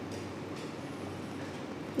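Steady low room hum and hiss, with no other event.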